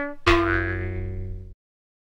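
Closing hit of a production-logo jingle: one bright, pitched chord with a deep low note, struck about a quarter second in, fading over about a second and then cutting off suddenly.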